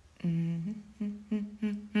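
A woman humming with her mouth closed: one longer note, then a few short ones, running into speech near the end.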